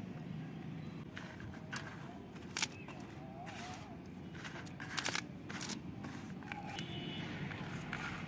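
A hand stirring and scraping dry, gritty potting mix of garden soil, river sand and manure in a plastic pot, giving irregular crackles and scrapes of grit. A steady low rumble runs underneath.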